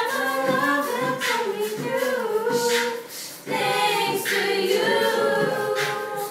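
A group of children and teenagers singing a song together without accompaniment, with a brief pause for breath about halfway through.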